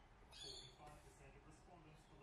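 Near silence, with one brief soft scrape about half a second in from a hand working on a paper planner cover and its vinyl sticker.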